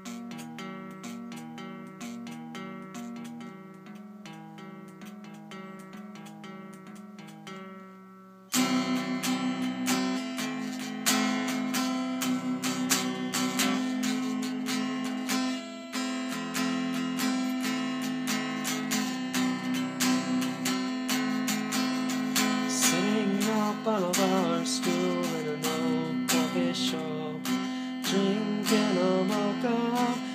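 Guitar played solo: softer picked notes at first, then about eight seconds in, loud strummed chords break in and keep going.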